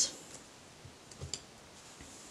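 A few faint clicks and taps of hands handling cards on a cloth-covered table, a couple of them about a second in, in an otherwise quiet room.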